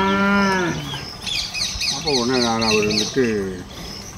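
A calf mooing twice in long, steady calls. The first is already sounding and ends about a second in; the second starts about two seconds in and lasts about a second and a half.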